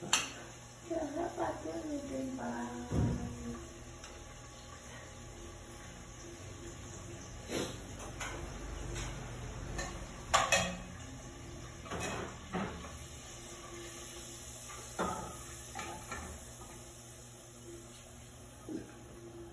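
Metal cooking pots, lids and a spoon knocking and clinking now and then at a gas stove, a handful of separate sharp knocks spread through the stretch, over a low steady background.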